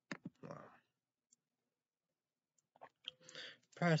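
A few small, sharp clicks and a short breathy rustle in the first second, then more soft clicks about three seconds in, just before a man starts speaking near the end.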